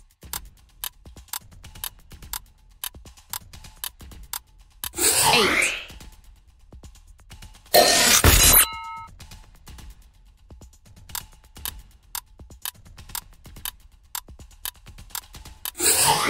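Quiz-game countdown sound effects: a run of quick, clock-like ticks, broken by a whoosh about five seconds in and a loud burst with a short chime around eight seconds. Another whoosh with falling pitch comes right at the end, as an answer is revealed.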